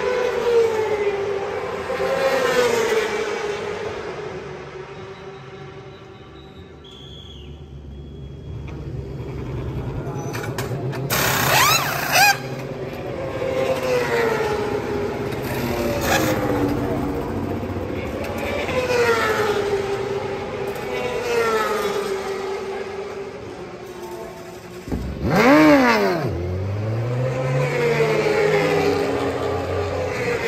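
Endurance-racing superbike engines screaming past at high speed again and again, each note dropping in pitch as the bike goes by. About a third of the way in there is a short, loud high hiss, and near the end a motorcycle engine revs sharply and then climbs steadily in pitch as it accelerates.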